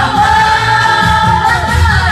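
A woman singing into a karaoke microphone over a loud cha-cha-cha backing track with a steady beat, holding one long note.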